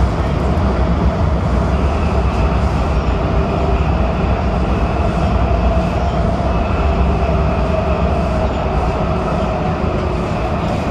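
WMATA Metrorail Breda 3000-series subway car running between stations, heard from inside the car: a loud, steady rumble of wheels on rail with faint steady tones above it.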